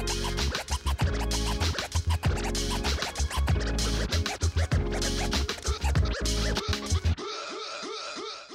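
Hip hop beat with heavy bass and a DJ scratching a record over it, with no rapping. The beat cuts off suddenly about seven seconds in, and a thinner, quieter sound without the bass follows.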